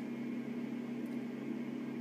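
Room tone: a steady low electrical or mechanical hum with faint hiss, unchanging through a pause in speech.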